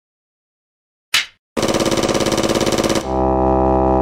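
Video intro sound effect: a single clapperboard snap about a second in, then a rapid stuttering tone at about fifteen pulses a second, then a held synth chord with deep bass.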